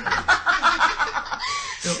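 A person laughing: a quick run of cackling laughs lasting about a second and a half, then a short vocal sound.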